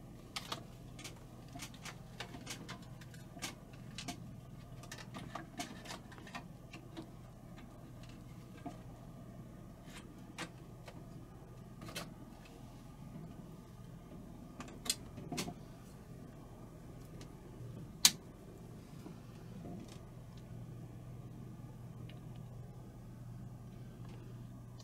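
Scattered clicks and knocks of an AJA KONA 4 capture card being fitted into a desktop PC's expansion slot and cables being handled inside the open case. Underneath is a steady low hum, the computer's power-supply fan still running because the machine had not fully shut down. A single sharp click about eighteen seconds in is the loudest sound.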